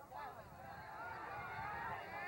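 Several people shouting and calling out at once, overlapping voices held and bending up and down in pitch.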